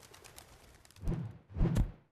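Sound effects of an animated logo: a faint rustle, then two short, low pitched sounds about half a second apart, the second near the end.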